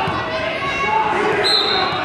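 Spectators and coaches shouting and calling out in a reverberant gym, over dull thuds of the wrestlers on the mat. A short, high, steady tone sounds for about half a second near the end.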